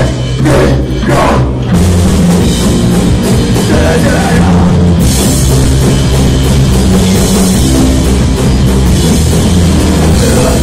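Live rock band playing loud: electric guitar, bass and drum kit. The first two seconds are stop-start hits with short gaps, then the full band plays on without a break, with more cymbal wash from about halfway.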